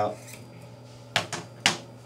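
AK-47 recoil spring assembly being drawn out of the receiver, with three sharp metal clicks a little over a second in, over a low steady hum.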